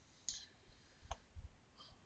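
A few faint computer mouse clicks, the clearest a single sharp click about halfway through.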